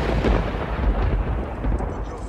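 A loud, deep rumbling roar of noise, heaviest in the bass, easing slowly.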